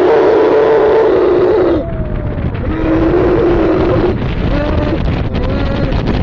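A man's long drawn-out screams on a fairground thrill ride, over a low rumble of wind buffeting the microphone. Two held cries of a second or two are followed by shorter, bending ones near the end.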